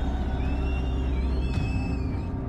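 Steady low hum with background noise during a pause in speech at a podium microphone. The hum drops away about one and a half seconds in.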